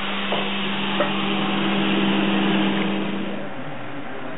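Electric grinder with an abrasive wheel running steadily, a hum with a rough hiss, as small cast bronze pieces are polished on it. Two light knocks come early on, and the machine sound stops about three and a half seconds in.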